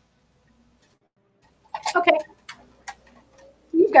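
Near silence for about a second and a half, then a woman says a brief "OK" followed by a few sharp clicks, and talk starts again near the end.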